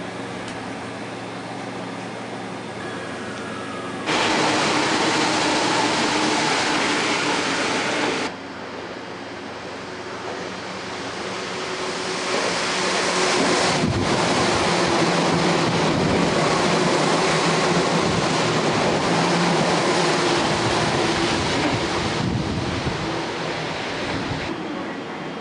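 Electric commuter trains at a station platform. First comes a low, steady hum from a train standing at the platform. A loud rush of noise starts and stops abruptly about 4 and 8 seconds in. From about 12 seconds in, a train pulling in grows louder, with running noise and a steady motor whine, then eases off near the end as it stops.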